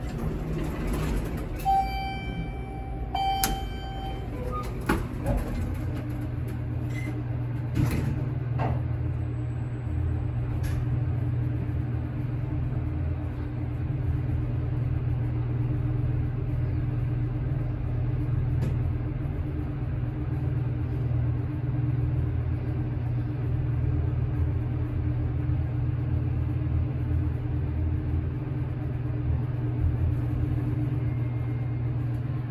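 Traction elevator sounds: a ringing chime tone twice about two and three and a half seconds in, a few clicks from the doors and equipment, then a steady low hum while the car travels down the hoistway.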